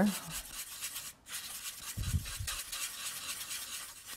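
A small paintbrush scrubbing and stirring watercolour paint in a plastic palette well, mixing a dark colour: a soft, continuous scratchy rubbing that stops briefly about a second in.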